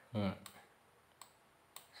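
Two computer mouse clicks about half a second apart, in the second half.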